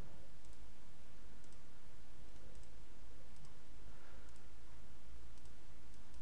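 Steady low background hum with light, faint clicks about once a second.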